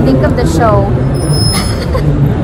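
City street traffic with a bus engine running close by: a steady low rumble, with a brief falling-pitched sound about half a second in.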